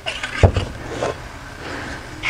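Handling noise of a flat template scraping and sliding off a square steel tube, with a short knock about half a second in.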